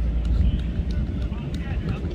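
Wind rumbling on the microphone, easing about half a second in, with faint distant voices of players and coaches.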